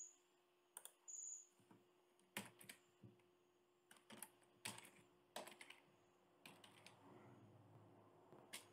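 Faint computer keyboard typing: irregular, separate keystrokes with short gaps between them.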